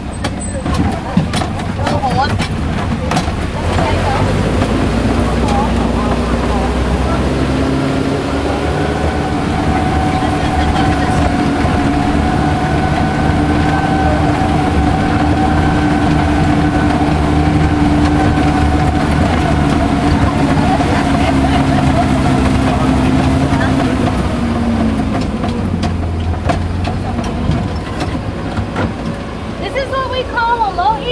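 Engine of a tour vehicle driving along a rough dirt track, with knocks and rattles in the first few seconds. The engine note rises after several seconds, holds steady, then drops off near the end.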